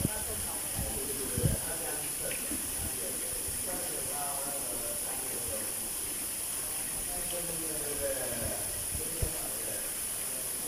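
Steady hiss of water running into a shallow concrete tank, with a few soft splashes in the water about a second and a half in and again near the end.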